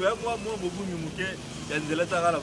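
Only speech: a man talking into a handheld microphone, with a brief pause near the middle.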